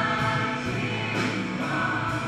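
Live worship song: several voices singing together over a strummed acoustic guitar, at a steady even level.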